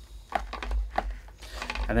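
Cardboard Blu-ray digipak being handled: a few light clicks and scrapes over a low rumble.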